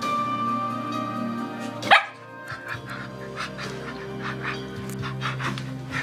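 A dog gives one short, sharp bark about two seconds in, the loudest sound here, over steady background music. After it comes a run of soft, quick noises, about three a second.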